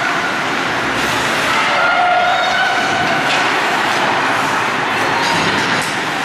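Ice hockey rink ambience: a steady rumbling wash of arena noise, with faint distant shouts from players and spectators.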